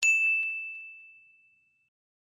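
A single bright bell-like ding sound effect, struck once and ringing out as one clear tone that fades over about a second and a half. It is the notification-bell chime of an animated subscribe button being clicked.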